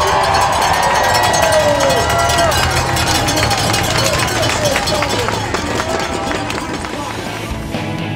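Spectators cheering and shouting as a large pack of road racing cyclists rolls away from a start line, with a dense clatter of sharp clicks from cleats snapping into pedals and freewheels ticking.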